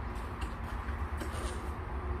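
Steady low background rumble with a few faint ticks as a metal-grilled standing electric fan is handled and set to a low setting.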